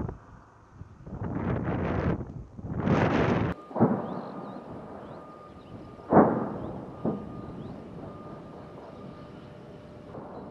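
Explosions from artillery fire: a sharp boom about four seconds in and the loudest one about six seconds in, each dying away in a long rumble, with a smaller thud a second after. Before the first boom, two swells of rushing, wind-like noise come and go.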